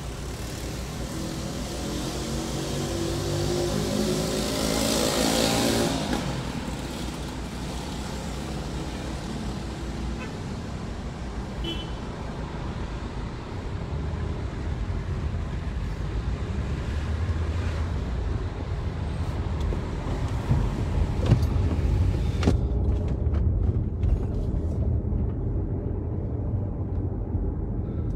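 Car road noise heard from inside the cabin while driving in city traffic: a low engine and tyre rumble. During the first six seconds an engine rises in pitch as it accelerates, then breaks off. Later the hiss fades and mostly the low rumble remains.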